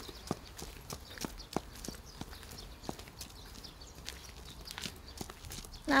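Footsteps of people walking on a road, a steady run of soft, short taps.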